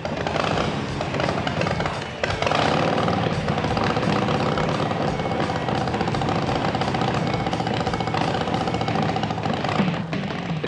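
Background music with a steady beat over a custom chopper's 100 cubic inch RevTech V-twin engine running at idle.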